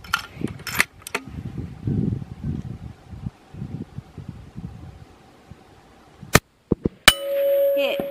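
A single .22-250 Remington rifle shot about six seconds in, followed under a second later by the clang of the bullet striking a steel plate, which rings on in a steady tone and slowly fades.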